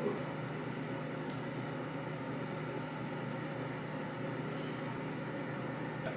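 Steady low hum of room background noise, with a faint click just over a second in.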